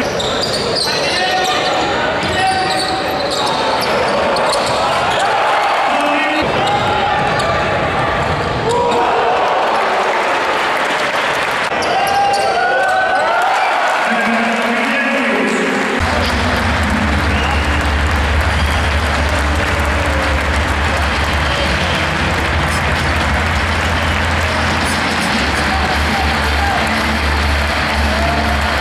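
Basketball arena sound during play: voices of the crowd and players and a ball bouncing on the hardwood court. About halfway through, a low steady hum comes in under a wash of crowd noise.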